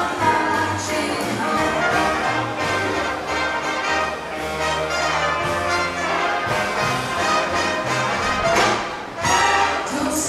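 A live band plays with female singers, saxophone and brass over keyboard and a steady bass line.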